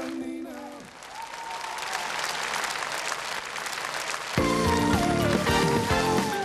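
A song's closing note ends, then a studio audience applauds for about three and a half seconds. A short burst of TV theme music comes in loudly about four and a half seconds in.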